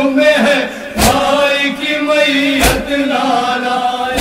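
Men chanting a nauha lament in unison on held, sung notes. Twice the group strikes their chests together in matam, about a second and a half apart.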